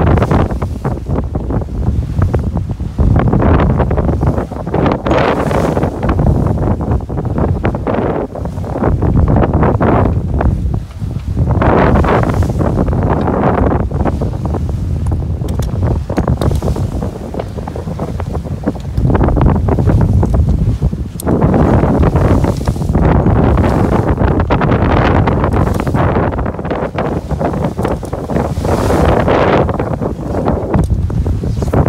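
Wind buffeting the microphone in gusts that swell and ease every few seconds, over the rush of waves and water along the hull of a sailboat under way.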